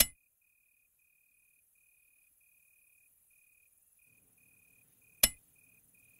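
Small stones hitting a window pane: two sharp ticks, one at the start and one about five seconds in. Under them, crickets chirp in an even, steady train.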